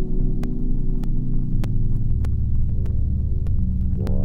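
Prophet Rev2 polyphonic synthesizer holding a low, droning layered chord that drops to a deeper bass note about two seconds in, with a short sharp click every half second or so.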